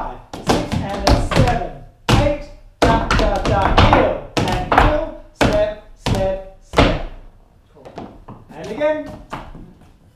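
Tap dance steps, shoes striking a wooden floor in quick, uneven strikes with a short lull near the end, while a voice sings the rhythm along with them.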